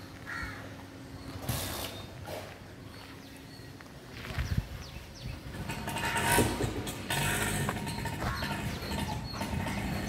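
Crows cawing over street noise. A motorcycle engine runs past at the start, and engine and street noise grow louder in the second half.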